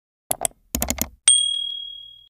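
Intro sound effects for a subscribe-button animation: a few quick clicks, then a single bright bell ding about a second and a quarter in that rings out and fades.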